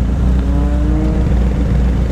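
Kawasaki Z800's inline-four engine idling steadily at a standstill in traffic, a constant low rumble.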